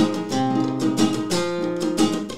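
Acoustic guitar strumming chords in a corrido rhythm, between sung lines of a live performance.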